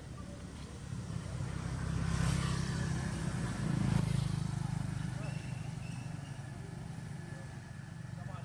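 A low engine hum, louder around the middle and fading toward the end, as of a motor vehicle passing.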